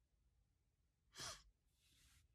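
Near silence, broken by one short breath, a sigh-like exhale, a little past a second in, then a fainter breath near the end.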